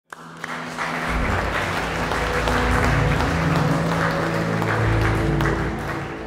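Audience applause, a dense patter of many hands clapping, mixed with an intro music theme of low held notes; both fade away near the end.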